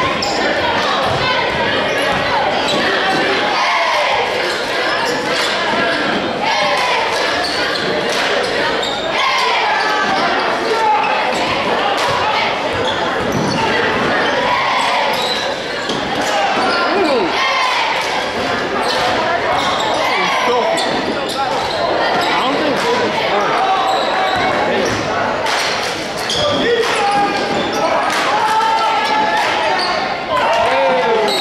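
Basketball dribbled on a hardwood gym floor during play, over the chatter and shouts of players and spectators, echoing in a large gym.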